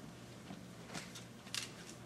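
Hushed room tone with a steady low hum and a few faint clicks and rustles, the most marked about a second and a half in.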